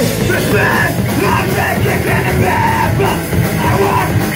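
Live band playing loud, with distorted electric guitar, bass and drums under a vocalist yelling into a microphone.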